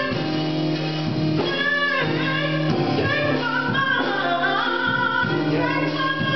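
A woman singing a gospel song into a handheld microphone, holding long notes that bend and slide in pitch.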